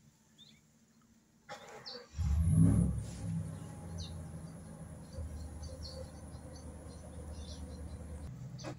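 Near silence at first, then from about two seconds in a low, steady motor hum, loudest just after it starts. Faint bird chirps come and go over it, with a thin high whine.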